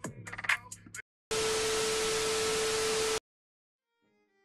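The hip-hop parody track with vocals plays briefly, then cuts out. About two seconds of loud, even television static hiss follows, with a steady tone under it, and it cuts off suddenly.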